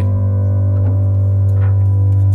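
Music from a worship band: one low chord held steadily, with no rhythm or melody changes, and a couple of faint small clicks.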